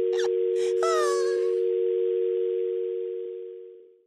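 Telephone dial tone, two steady tones sounding together on the line after the other party has hung up. It fades out near the end.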